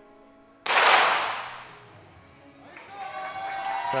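Competition .22 pistols fired almost together, heard as one sharp report about two thirds of a second in. The report rings away in the range hall over about a second and a half; it is one shot of the finalists' five-shot series.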